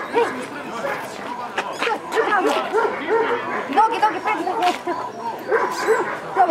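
Dobermans barking and yipping in quick, repeated short calls, over the talk of people around them.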